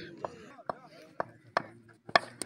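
Four sharp taps, irregularly spaced about half a second apart, over faint distant voices.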